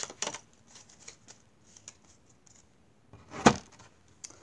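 Playing-card-sized tarot cards being shuffled and flicked in the hands with soft rustles and light ticks, then one sharp slap about three and a half seconds in as a card is laid down on the table.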